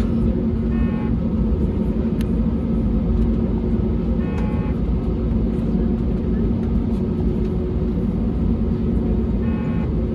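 Steady cabin noise inside an Airbus A320neo taxiing, a constant low rumble with a steady engine hum. The engines are at low taxi power. A few short, faint sounds that may be voices come through briefly three times.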